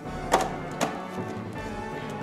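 Background music, with two sharp plastic knocks about half a second apart as a blender's lid is handled and fitted onto its plastic jar.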